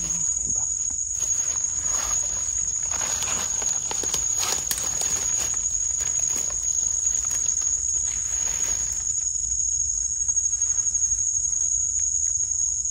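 A steady, high-pitched drone of forest insects runs throughout. Over it, dry leaf litter rustles and soil is scraped as a wild mushroom is dug out of the forest floor by hand, most busily a few seconds in.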